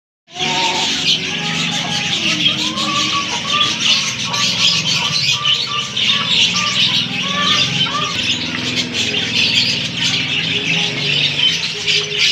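A flock of caged budgerigars chattering in a dense, constant twittering of many overlapping chirps. Short higher calls stand out in the first several seconds.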